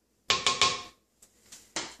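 A rubber spatula knocking against the rim of a mixing bowl as icing is scraped off it: three quick taps with a short ring, followed by fainter scraping and a softer knock near the end.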